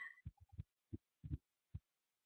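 About seven faint, soft, low thumps or taps at irregular intervals, close together in the first second and a half, then quiet.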